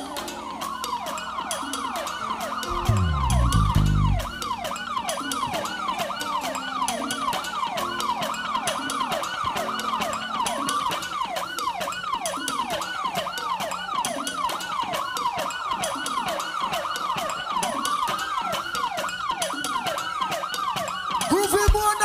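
Ambulance-style siren sound effect played through the stage sound system: a fast yelp sweeping up and down about twice a second, slowing into one long wail near the end. A heavy low boom sounds about three seconds in.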